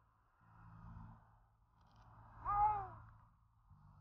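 A cat meowing once about two and a half seconds in, a single call that rises and then falls in pitch, with soft breathy sounds around it.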